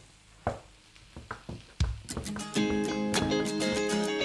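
A few separate knocks of a chef's knife on a wooden chopping board. About halfway through, background music with plucked strings and a steady beat comes in and becomes the loudest sound.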